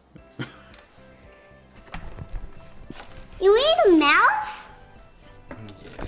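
A young girl's high, sing-song wordless vocal sound, sweeping up and down in pitch for about a second midway, over faint background music. A few light clicks and taps sound from handling at the table.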